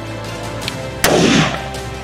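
A single rifle shot about halfway through: a sharp crack whose report rolls on for about half a second, over steady background music. It is a shot at a mule deer buck, which the shooter says hit him.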